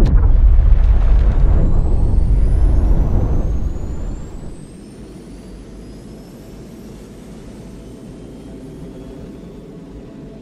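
Cinematic faster-than-light travel sound effect: a deep rumbling whoosh that starts suddenly and fades away over about four seconds, with faint whistles rising in pitch above it. It settles into a low, steady drone.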